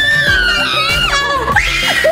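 A girl's high-pitched excited scream, held for about a second and then falling away, over background music.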